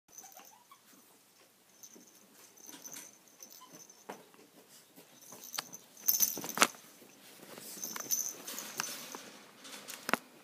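A small dog and a ferret wrestling on a bedspread: scuffling, rustling fabric and scattered sharp clicks and taps. The loudest clicks come about six seconds in.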